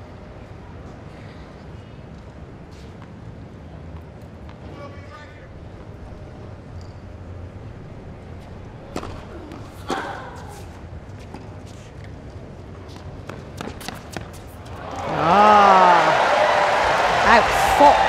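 Tennis racket strikes on the ball during a serve and rally, heard as sharp pops over quiet stadium crowd murmur. About fifteen seconds in, the crowd breaks into loud cheering as the point ends.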